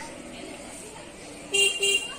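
A vehicle horn honks twice in quick succession, two short toots about a second and a half in, over low outdoor background noise.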